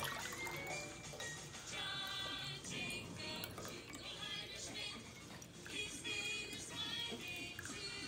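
Quiet music with the faint trickle of orange juice being poured from a jar through a mesh strainer into a glass.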